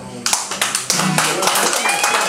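Small audience clapping, breaking out about a third of a second in at the end of the song, with voices over the applause.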